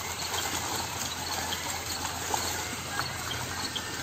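Tilapia flapping and splashing in a seine net being hauled through shallow pond water: small irregular slaps and splashes over a steady low hum.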